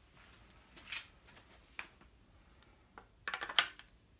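Handling clicks and knocks from an EdGun Leshiy 2 air rifle and its detachable air bottle as they are picked up to be joined: a few soft taps, then a quick cluster of sharper clicks and knocks a little after three seconds in.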